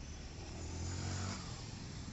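Road traffic at a city junction, with one motor vehicle passing close: its engine hum and tyre noise swell and fade about a second in.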